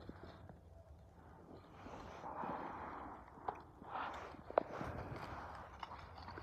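Faint footsteps and rustling in grass and fallen leaves, with a couple of sharp clicks near the middle.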